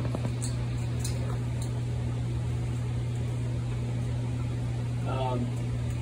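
Steady low machine hum at an even level, with a few faint ticks in the first two seconds and a brief mumbled voice about five seconds in.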